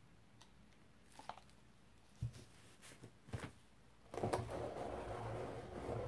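Faint handling sounds of an acrylic pour painting: a few light taps and knocks of the palette knife and paint cups, then about four seconds in a rustling scrape lasting about two seconds as the gloved hand grips the painted record and shifts it on the paper towel.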